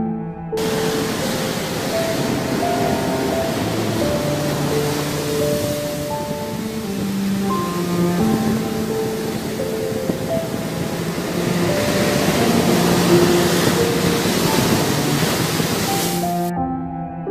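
Sea waves breaking and washing up a shore, heard as a steady rushing noise that starts about half a second in, mixed with slow background music of held notes.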